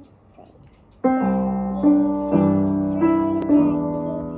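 Upright piano played four-handed by a child and an adult. Chords begin about a second in and are struck again about every half second to second, each one ringing on.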